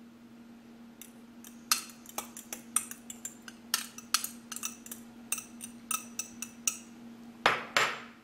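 A metal fork clinking and scraping against small glass bowls as minced garlic is knocked out into cream cheese: a string of irregular sharp clinks and taps, the loudest near the end, over a steady low hum.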